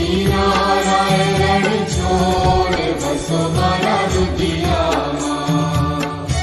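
Devotional aarti singing: a chanted vocal line over continuous instrumental accompaniment.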